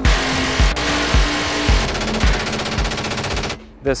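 Helicopter door-mounted rotary minigun firing one long continuous burst, a steady rapid buzz that cuts off suddenly about three and a half seconds in.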